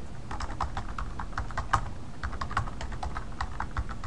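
Computer keyboard typing: a rapid, uneven run of keystroke clicks as a short phrase is typed out.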